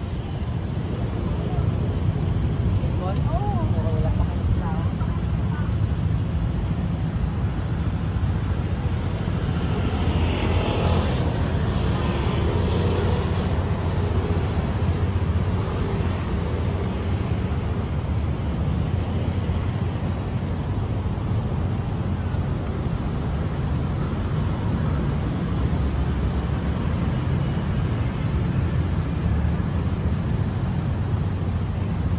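City street traffic: a steady low rumble of cars on a multi-lane road, swelling louder for a few seconds about ten to fourteen seconds in as a vehicle goes past.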